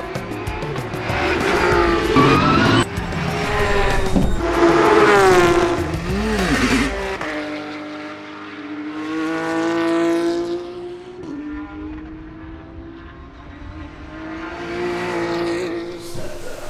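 Race car engines revving and passing at speed, their pitch sweeping up and down, loudest in the first half, followed by a longer, quieter engine note, with music underneath.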